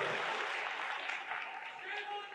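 Audience applauding, a steady wash of clapping.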